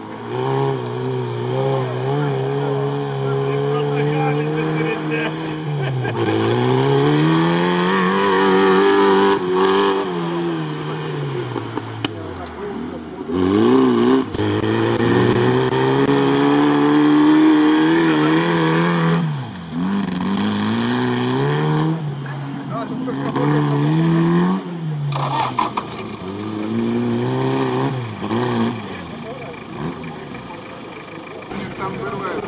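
Engine of an off-road-modified ZAZ Zaporozhets revving hard under load on a sandy course. The pitch climbs, drops away and climbs again several times as the throttle is lifted and reapplied.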